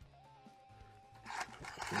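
Soft background guitar music with a simple stepping melody. About a second and a half in, a burst of clicks and rustles from objects being handled on a desk joins it.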